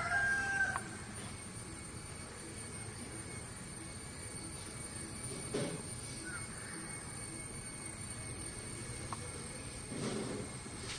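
A fowl's call with a held, steady pitch ends within the first second. After it comes a faint steady background, with one short knock about halfway through.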